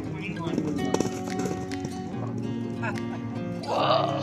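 A song plays as background music over the hoofbeats of a horse cantering on grass, with a few sharper hoof strikes about a second in. A brief louder rush of noise comes near the end.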